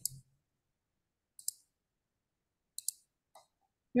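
A few computer mouse clicks: a single click about a second and a half in, then a quick double click near three seconds and a fainter click just after.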